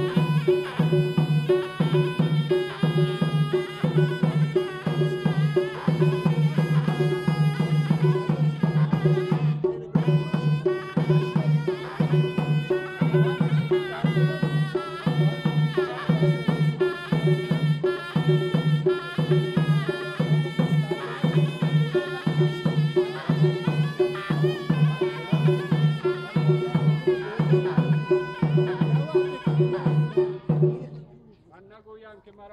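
Southern Iranian folk music for the dance: a loud reed pipe plays a bending melody over a steady, pulsing drum beat.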